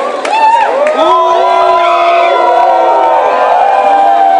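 A crowd booing: many voices overlap in long, drawn-out calls that swell about a second in and then hold loud.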